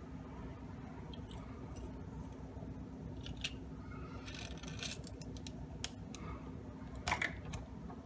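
Small 3D-printed plastic parts being handled and pressed into place: scattered light clicks and scrapes, the sharpest click about six seconds in and a short cluster just after seven, over a low steady hum.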